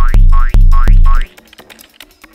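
Loud cartoon 'boing' sound effects, four in quick succession. Each is a falling low twang with a rising chirp above it. They stop a little past halfway, leaving only faint music.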